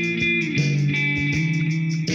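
Guitar playing sustained notes that ring on, moving to a lower note about half a second in.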